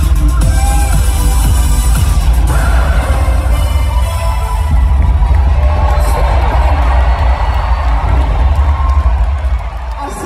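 Loud live dance-pop music over an arena sound system, a driving beat with heavy bass, with the crowd cheering over it; the bass and beat drop away near the end.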